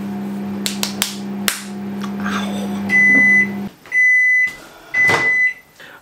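Microwave oven running with a steady hum while heating milk and water, then finishing its cycle: three long high beeps about a second apart, the hum cutting off after the first beep. A few sharp clicks in the first second and a half.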